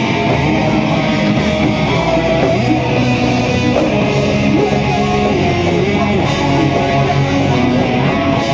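Live rock band playing loudly, guitar over a drum kit.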